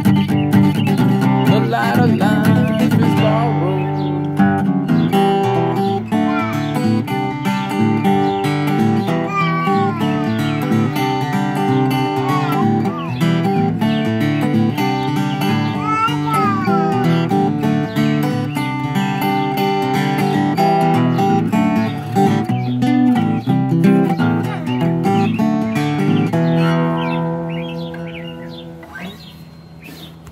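Acoustic guitar played solo, the closing instrumental of the song, dying away over the last few seconds as the final notes ring out.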